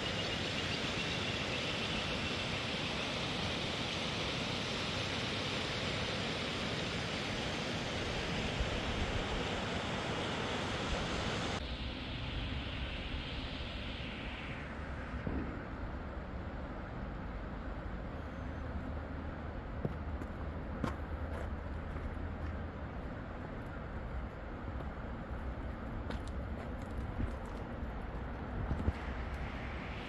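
Steady rushing noise of a fast mountain river with wind, bright and full at first, then changing abruptly about eleven seconds in to a duller, lower rush. In the second half, occasional short crunches and clicks of footsteps come from a stony path.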